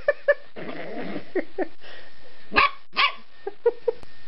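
Dog barking and growling in rough play: two sharp barks at the start, a growl about a second in, then a string of barks, the loudest two about two and a half and three seconds in.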